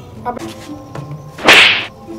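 A single short, loud whoosh about one and a half seconds in, lasting under half a second, as a full-face helmet is brought down over a seated boy's head.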